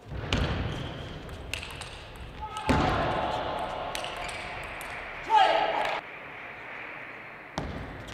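Table tennis ball clicking off rackets and the table, with spectators' voices swelling over the rally and a loud shout about five seconds in.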